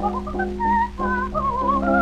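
Coloratura soprano singing quick, light runs of short high notes with vibrato over a sustained accompaniment, on an early acoustic recording (1906) that gives the voice a thin, whistle-like sound. A steady low rumble runs underneath.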